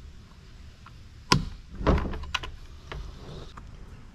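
Plastic snap-on air cleaner cover being pressed onto a Ryobi gas string trimmer: one sharp plastic snap about a second in, then a duller knock and a few lighter clicks as it seats.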